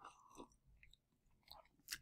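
Near silence in a pause of speech, with a few faint, brief clicks.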